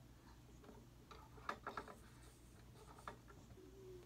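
Near silence over a low steady hum, with a few faint clicks and taps, bunched about a second and a half in and once more near the end, from a resin ball-jointed doll being handled on a desk.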